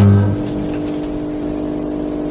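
Logo sound effect: a sudden hit with a brief deep boom, then a steady, motor-like humming drone that holds at one pitch.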